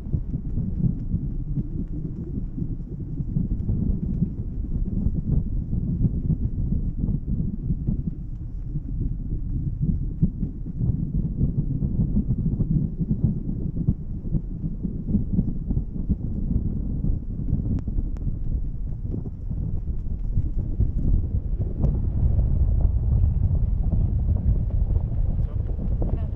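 Wind buffeting the microphone of a camera riding on a parasail, a gusty low rumble that grows louder in the last few seconds.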